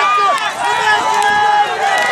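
Many men shouting and calling at once, their voices overlapping, with the hooves of a large pack of galloping horses beneath.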